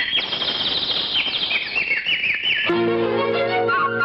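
Opening of a Tamil film song: bird-like chirps, a run of quick falling chirps, then sustained orchestral instrument notes enter about two and a half seconds in.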